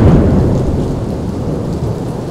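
Heavy rain pouring, with a low rumble of thunder that is loudest at the start and slowly dies away.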